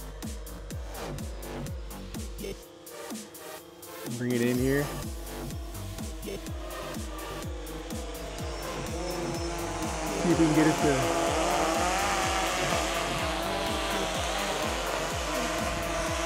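Background music with a steady beat. From the middle on, it is joined by the whine of a Bayangtoys X21 quadcopter's brushless motors and propellers in flight, wavering in pitch and growing louder about ten seconds in.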